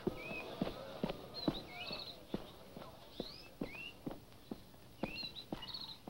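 Jungle bird calls: rising whistled chirps and short trills, repeated every second or two, over a steady run of soft knocks about three a second.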